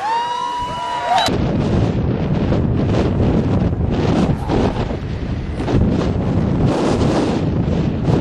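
A brief held shout, then wind buffeting the microphone in uneven, rumbling gusts.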